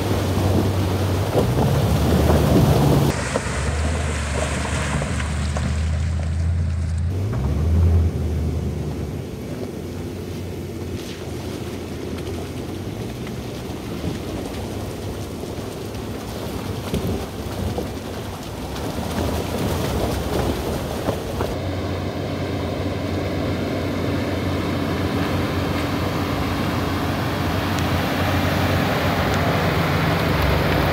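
Full-size pickup trucks, a Toyota Tundra and then a Chevy Silverado Z71, driving slowly past on a rough dirt trail. An engine runs with a brief rev about eight seconds in, followed by a stretch of tyre and gravel noise. Near the end the second truck's engine grows louder as it pulls alongside.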